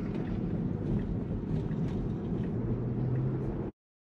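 Road and tyre noise inside a Tesla's cabin while driving, a steady low rumble with a brief low steady hum near the end. The sound cuts off suddenly shortly before the end.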